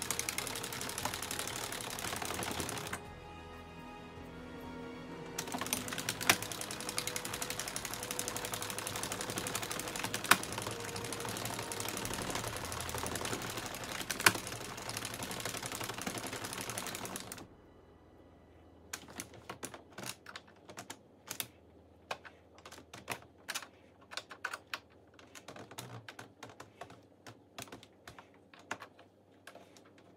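Plastic hand-cranked circular knitting machine (Addi Express) running, a dense rattling clatter of its needles that eases briefly and stops suddenly a little over halfway through. After that come scattered light clicks as the plastic needles and yarn are handled.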